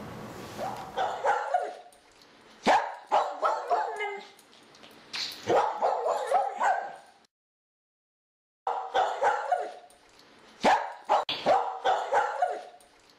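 A dog barking in short, repeated runs of barks. A little past halfway the sound cuts out completely for about a second and a half, then the barking resumes.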